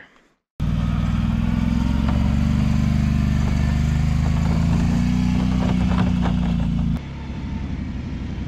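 ATV engine running close by at a steady speed, rising a little in pitch about midway. Near the end it gives way to a quieter, rougher engine sound.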